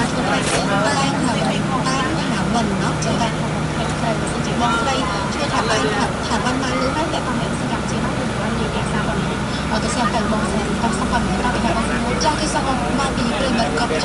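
Steady engine hum of a moving road vehicle heard from inside it, with indistinct voices talking over it.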